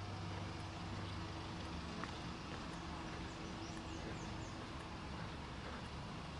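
Steady outdoor ambience of a low hum of distant traffic, with a few faint, high bird chirps around the middle.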